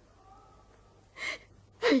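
A woman's single short, sharp gasping breath about a second in, a sob-like intake of breath in distress; her voice comes in at the very end.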